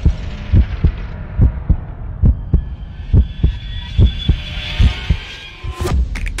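Soundtrack sound design: deep bass thumps in heartbeat-like pairs, about one pair every 0.85 s, under a hiss that swells and fades. A sharp hit comes near the end as electronic music starts.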